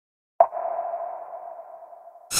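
An electronic ping for an animated logo: a sudden start about half a second in, then a single held tone that slowly fades away.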